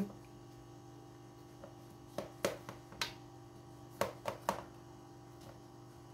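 A knife cutting through the baked crust of a pan of yalancı baklava along its scored lines. There are a handful of short, sharp clicks and taps in the middle seconds as the blade presses through, over a steady low hum.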